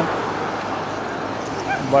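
Steady roadside traffic noise between words, with a brief high-pitched animal-like call near the end.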